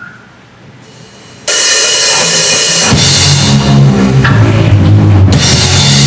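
A live hard rock band starting a song: after a moment of quiet room sound, the drum kit comes in suddenly with loud crashing cymbals about a second and a half in. A heavy low end of bass and kick drum joins about a second later as the full band plays.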